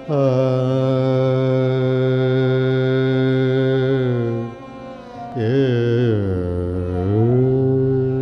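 Male voice singing a wordless ghazal alaap: one note held steady for about four seconds, a brief break, then sliding, wavering notes that dip low and climb back to a sustained note.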